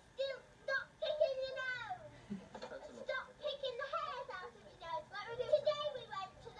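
Indistinct chatter of children's and adults' voices, played back through a television's speaker.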